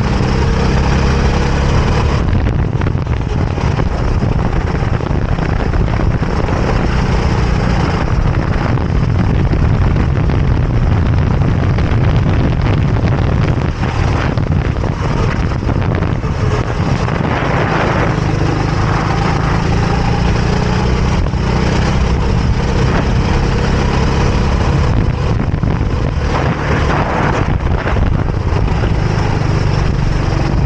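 Rental kart engine heard onboard at racing speed, running hard for a whole lap section. Its note drops and rises again several times as the kart slows for corners and accelerates out of them.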